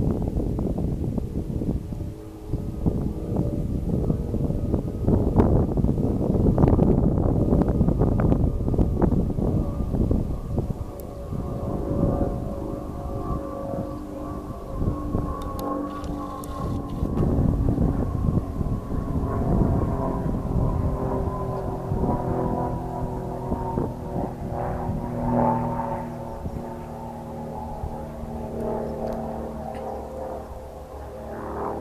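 A steady engine drone, several pitches held together and drifting slightly, clearest in the second half, over low rumbling noise that is heaviest in the first half.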